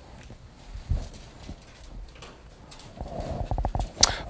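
Irregular knocks and thumps with shuffling from people moving about in a classroom, the loudest about a second in and a quicker run of knocks near the end.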